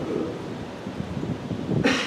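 A brief pause in a man's speech into a microphone, with a short sharp hiss near the end.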